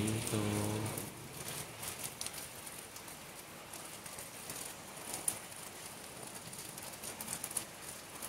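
Light rain falling steadily, an even patter with scattered sharper drip ticks, one louder about five seconds in.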